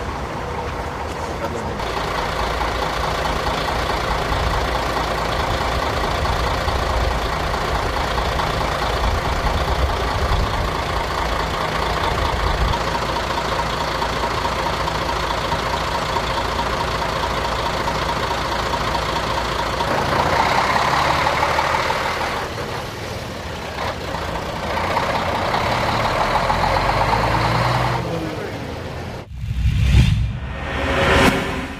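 A motor vehicle engine running steadily, with indistinct voices over it. The sound changes character about two-thirds of the way through.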